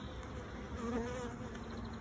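A honeybee colony buzzing steadily in an open hive box.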